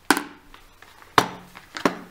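Snap-lock clips on a plastic food-storage container's lid being flipped open one at a time: three sharp plastic clicks, one at the start, one about a second in and one near the end.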